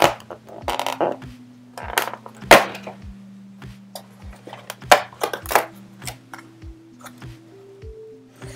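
Cardboard advent-calendar door being torn open along its perforations: several short, loud ripping bursts in the first six seconds. Background music with a steady beat runs throughout.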